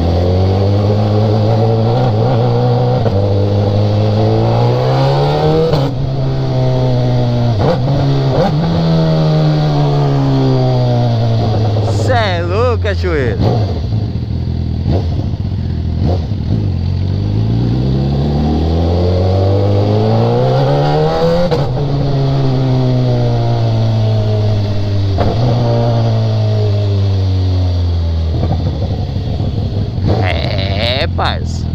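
BMW sport motorcycle's engine riding through town streets, its note rising under acceleration and falling as the throttle is eased off, twice over.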